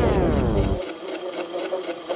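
Electronic dance track in a breakdown: a synth sweeps down in pitch, then the bass cuts out about a second in, leaving a thin, fast, machine-like rattling texture.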